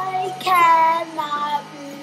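A young girl singing, holding each note; the loudest, highest note comes about half a second in and the voice fades toward the end.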